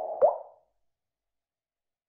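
Logo animation sound effect: a mid-pitched tone fading out with a short plop about a quarter second in, all dying away within about half a second.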